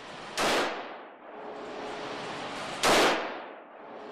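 Two gunshots about two and a half seconds apart, each sharp crack followed by a long echoing tail from the hard walls of an indoor firing range.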